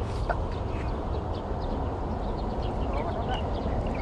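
Outdoor ambience: a steady low rumble and hiss, with faint short high chirps scattered through it.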